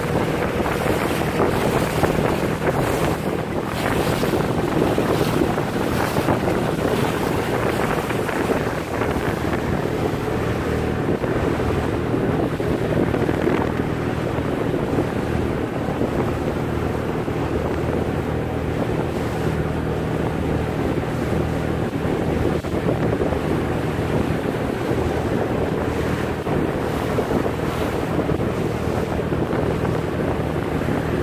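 An 18 ft boat's 130 hp motor running at a steady cruising speed, with water rushing along the hull. Wind buffets the microphone, most heavily in the first several seconds.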